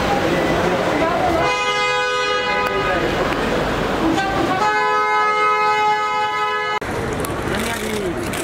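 A car horn sounding two long, steady blasts, the first about a second and a half long and the second about two seconds.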